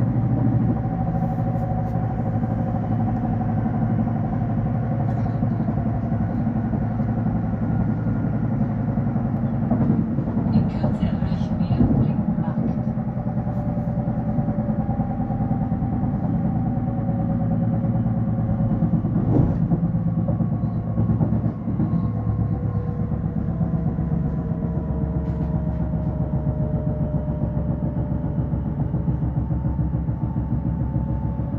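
Electric regional train running at speed, heard from inside the passenger car: a steady rumble of wheels on the track with several whining tones that drift slowly lower in pitch.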